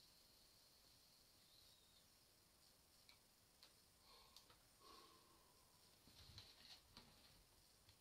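Near silence, with a few faint clicks and soft breath sounds as a man draws on a homemade vape.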